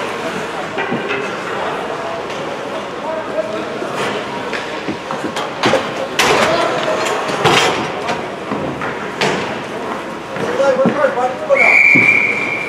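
Ice hockey rink ambience: a murmur of voices with scattered sharp knocks of sticks and puck. Near the end a referee's whistle gives one steady blast of about a second.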